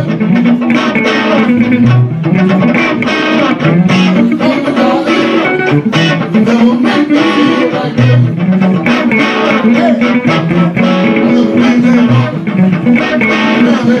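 Two electric guitars playing an instrumental blues passage through amplifiers: a repeating low riff with picked lead lines above it.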